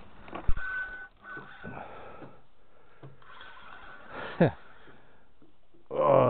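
Plastic fishing cooler's lid shutting with a single sharp knock about half a second in. Later comes one short squeak that falls in pitch, with low steady background noise between.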